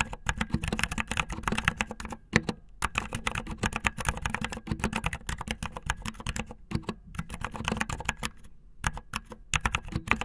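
Fast typing on a mechanical keyboard with silent brown switches, muffled tactile switches with dampened keystrokes: a dense run of key clicks, with a brief pause about two seconds in and another near the end.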